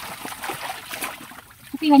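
Water splashing and streaming off a wire-mesh dip net as it is lifted through a tub with catfish in it. A voice begins near the end.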